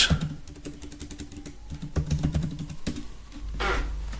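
Typing on a computer keyboard: a run of quick key clicks that stops about three seconds in.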